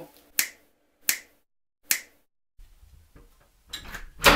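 Three sharp finger snaps about three-quarters of a second apart, followed by a low hum and a soft click near the end.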